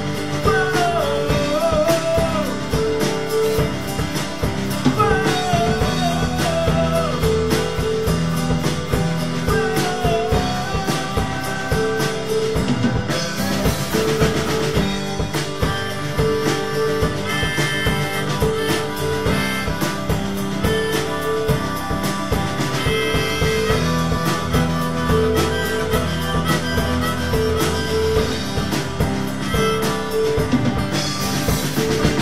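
Live band playing an instrumental passage: drum kit keeping a steady beat under acoustic guitar and keyboard, with a repeating riff. A lead melody bends and slides in pitch over the first dozen seconds, and a cymbal wash swells about halfway through.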